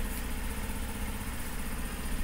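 Honda Super Cub 50 DX's air-cooled, horizontal single-cylinder 49cc SOHC engine idling steadily.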